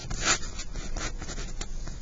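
Pen writing on paper: a run of short scratchy strokes, the strongest just after the start.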